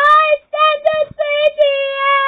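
A high-pitched cartoon voice singing through a television's speaker: a few short notes, then one long held note from about a second and a half in.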